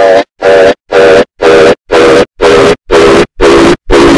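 Heavily distorted, stuttering audio effect: a short pitched sound sample repeats in loud, clipped bursts about ten times, each cut off sharply, its pitch slowly falling.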